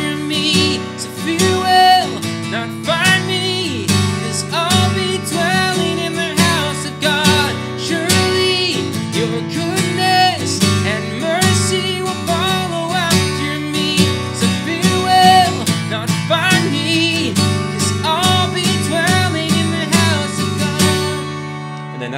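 Acoustic guitar strummed in a steady rhythmic pattern, switching between C and Fmaj9 chords, with a man singing along. The strumming stops just before the end.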